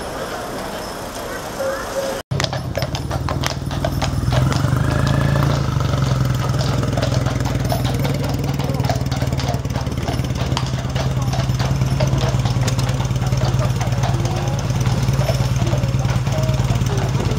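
A vehicle engine idling steadily close by, the loudest sound from about four seconds in. Before it, just after a cut, a few seconds of horses' hooves clopping on the road.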